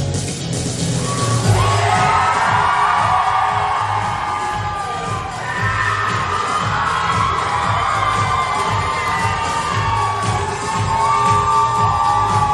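Pop music with a steady beat, with an audience cheering and shouting over it from about a second and a half in.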